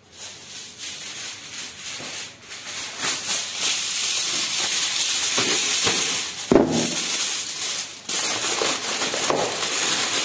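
Thin plastic bag and aluminium foil crinkling and rustling in hands as a piece of cake is wrapped, swelling over the first few seconds into a dense crackle, with one sharp knock about six and a half seconds in.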